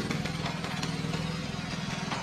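A small engine running steadily at idle, with a fast even pulse.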